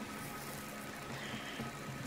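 Faint steady background hum and hiss with no distinct events: room noise.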